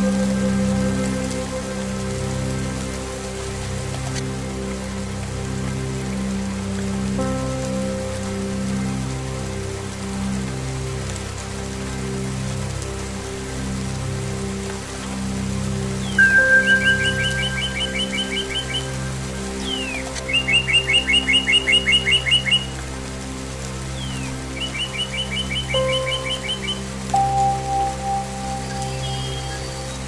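Slow ambient music of sustained singing-bowl and low string tones over steady rain. In the second half a songbird sings three rapid trilled phrases a few seconds apart.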